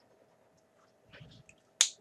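Faint handling of paper, then a single sharp click from the pen as the writing stops, just before the end.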